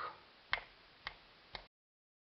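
Three sharp clicks about half a second apart, then the sound cuts out to dead silence.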